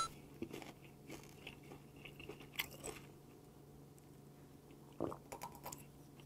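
Faint mouth sounds of a man sipping and swallowing thick makgeolli from a small bowl, with scattered soft clicks and a slightly louder gulp about five seconds in, over a low steady hum.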